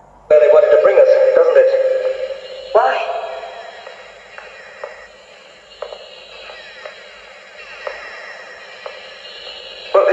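Soundtrack of a science-fiction TV programme played back from a Betamax tape through a TV speaker: electronic sounds that start suddenly just after the beginning, with a rising sweep about three seconds in, then quieter tones.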